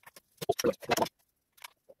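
Quick cluster of sharp metal clinks and knocks about half a second in, then two lighter clicks near the end: hands handling the aluminium oil pan and its bolts as the pan is fitted to the engine block.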